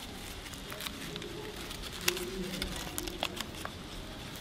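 Stiff origami paper of a 12-piece firework flexagon rustling, with light clicks, as hands turn it over and over through its positions.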